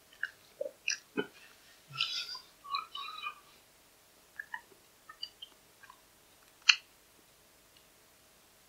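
A person chewing a mouthful of salad, with short wet mouth sounds that come thickly in the first few seconds and then thin out. There is one sharp click about two-thirds of the way through.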